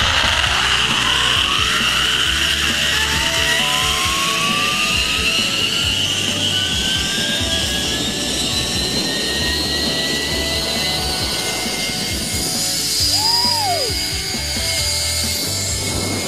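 Zipline trolley pulleys running along a steel cable, a whine that rises steadily in pitch as the trolley gathers speed and then holds steady, over a hiss of cable and rushing air.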